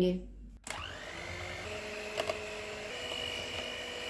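An electric hand mixer starts up about half a second in, its whine rising quickly to speed, then runs steadily with its beaters whipping liquid cream in a bowl. Its pitch steps up slightly about three seconds in.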